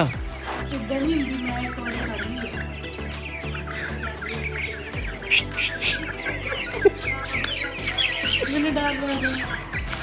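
A flock of domestic chickens clucking with short, repeated calls, over a steady background music bed.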